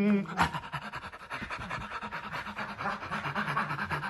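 A man imitating a dog with rapid, steady panting, many quick breaths in a row.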